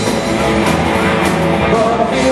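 Live rock band playing a loud blues-rock number on electric guitars, bass and drums.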